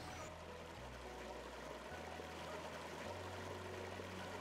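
Faint, steady rush of a shallow river's water, with low humming tones underneath that shift a few times.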